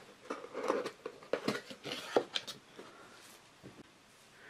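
Cardboard box being opened by hand and its contents handled: a run of light, irregular scrapes, clicks and rustles lasting about three seconds.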